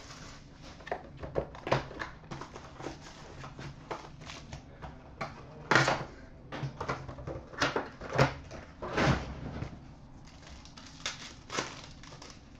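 Hands opening a cardboard trading-card box and handling a foil card pack: intermittent rustling, scraping and crinkling, with a few louder crackles about six, eight and nine seconds in.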